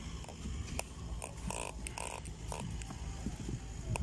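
Close handling noise as a freshly caught tilapia is held and unhooked: scattered small clicks and rustles over a low steady rumble, with two short grating sounds around the middle.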